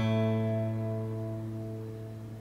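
Taylor acoustic guitar, capoed at the second fret, with three strings in a G-shape chord (the low E, G and B strings) plucked together once and left ringing, slowly fading.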